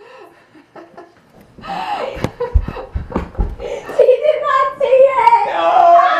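People laughing and talking excitedly over one another. It is quiet for the first second or so, then the voices and laughter get loud.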